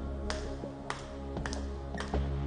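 Dramatic background score: sustained low tones under a light tapping beat, a little under two taps a second.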